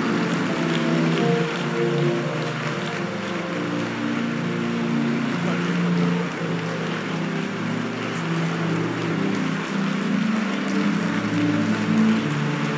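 Soft, sustained keyboard chords changing slowly, over a steady hiss-like wash of background noise.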